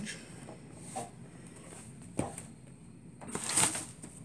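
Handling noises from a plastic drive enclosure being lifted and set aside: a light knock about two seconds in and a brief rustle shortly before the end.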